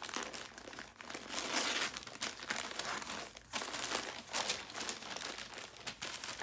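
Wrapping around a bundle of clothing crinkling and rustling in irregular crackles as it is pulled open by hand.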